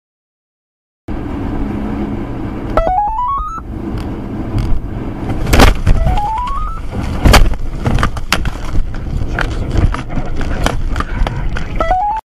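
Tornado wind rumbling against a car, with debris striking it in many sharp knocks, the loudest about halfway through. A stepped rising tone sounds three times over the din.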